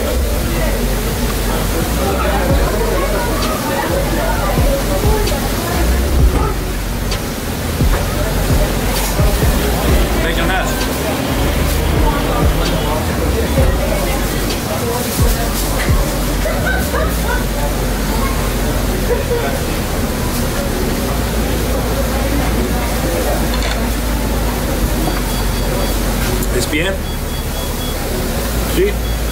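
Background music over a steady wash of street noise and indistinct voices, with a strong low rumble.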